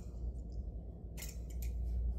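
Balisong (butterfly knife) handles and blade clacking as the knife is flipped, tossed and caught. A quick run of sharp metallic clicks comes just past a second in and again near the end, over a low steady rumble.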